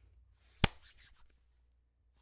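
One sharp impact, like a clap or knock, about two-thirds of a second in, against near-silent room tone.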